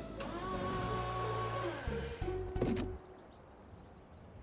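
Cartoon forklift's lift motor whirring steadily for about two seconds as it raises a pallet of pipes, then a short second whir ending in a knock as the load goes into a truck's bed.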